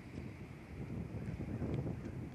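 Wind buffeting the microphone outdoors: an uneven low rumble that rises and falls.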